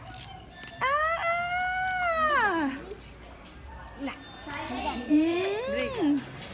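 A high-pitched voice holding one long drawn-out vowel for about two seconds, then a shorter rising call near the end.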